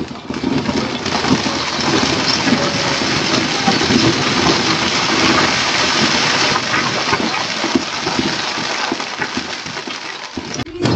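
Aerial fireworks crackling: a dense, continuous rush of tiny pops with a few deeper bangs mixed in, building just after the start and easing a little near the end.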